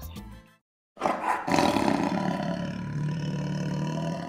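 Lion roaring, a sound effect that starts abruptly about a second in and carries on for about three seconds, after the tail of children's background music fades out.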